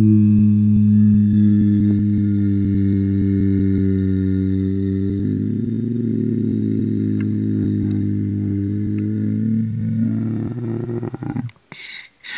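A long, steady, buzzy low electronic tone, like a held synthesizer or organ chord, that lasts about eleven seconds and cuts out near the end.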